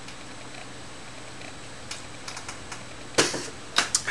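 Quiet sipping and swallowing from a glass of beer, with a few faint mouth clicks. Near the end comes a short loud rush of breath, then a sharp knock as the glass is set down on the desk.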